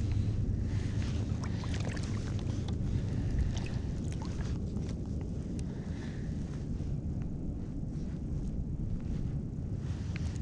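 Steady low rumble of wind buffeting the microphone over moving river water, with scattered faint clicks and ticks.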